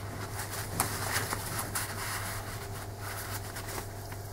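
Kitchen roll rustling as it wipes excess PVA glue off a paper page, with a few light taps and handling sounds, over a steady low hum.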